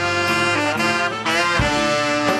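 Live band music led by a horn section, with trombone, trumpet and saxophone playing held notes together over an electric bass.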